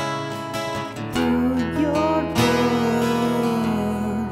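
Acoustic guitar being strummed, with new chords struck at the start, about a second in and about two and a half seconds in, each left ringing.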